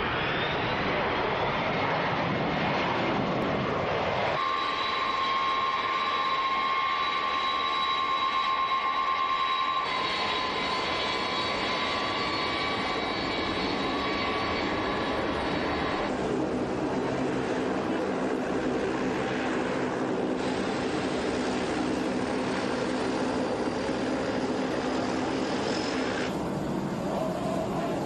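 McDonnell Douglas DC-10 airliner's jet engines running as it rolls down the runway and taxis, a steady roar with a high whine. The sound shifts abruptly a few times, and in the later part a lower hum with several steady tones comes in.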